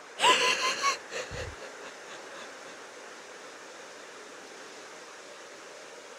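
A short, high-pitched, wheezy laugh about a quarter of a second in, fading out with a few weaker breaths by a second and a half, then only a faint steady hiss.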